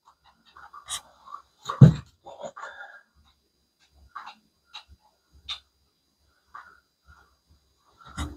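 Scattered small clicks and handling knocks, with one louder thump about two seconds in, and a few short breathy sounds between them.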